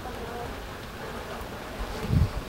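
Steady rushing noise of thunderstorm wind and rain outside, with strong low rumble from gusts.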